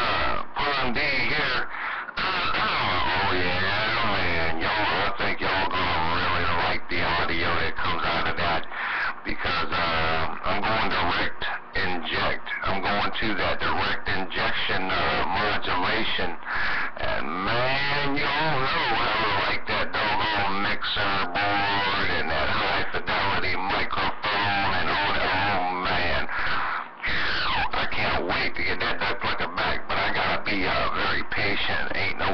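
Garbled, overlapping voices of other stations coming through an AM CB radio's speaker.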